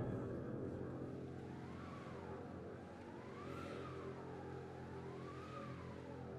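Wind band playing softly: a low chord held steady, with a thin high note that slowly swells up and sinks back down three times.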